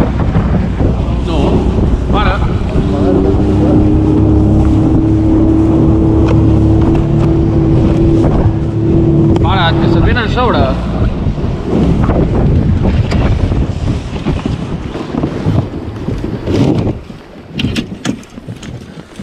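Outboard motor of an inflatable boat running steadily under way, with wind buffeting the microphone and the hull slapping the water. The level drops away near the end.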